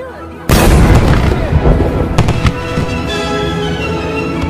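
Fireworks going off: a loud boom about half a second in, then a run of crackling bangs, with background music underneath.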